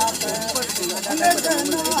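Voices singing a Ponung chant over a fast, steady metallic jingling that keeps the beat.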